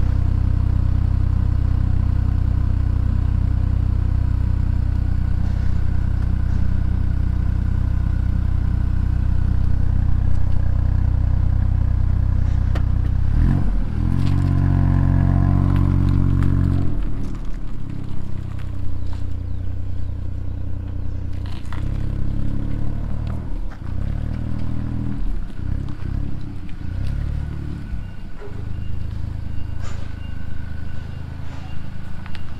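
Ford Fiesta MK8 ST's 1.5-litre turbocharged three-cylinder engine, with an aftermarket Scorpion exhaust, idling steadily. About 13 seconds in it gets louder as the car pulls away, then rises and falls with on-off throttle while the car is manoeuvred at low speed.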